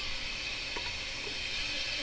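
Steady hiss of steam from lever espresso machines standing hot at brewing pressure.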